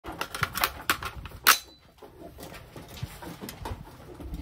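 AR-15 rifle being handled and set onto a bench rest: a quick run of sharp clicks and clacks, the loudest about one and a half seconds in, followed by fainter knocks.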